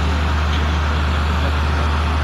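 A steady, unchanging low hum with an even hiss over it, from a running machine or motor.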